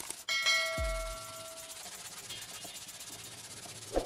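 A bright bell-like ding, the chime of a subscribe-button sound effect, strikes about half a second in and rings for over a second, over background music with a low kick-drum beat and a steady rubbing hiss.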